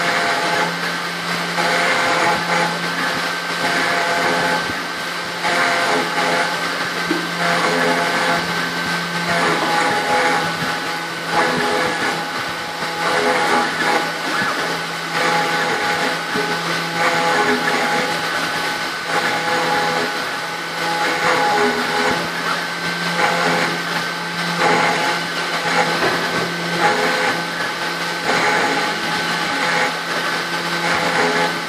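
3040T desktop CNC router engraving aluminium with a 90° V-bit. The spindle runs steadily at 10,000 rpm, while the axis stepper motors sing in short tones that start, stop and change pitch as the cutter traces the pattern.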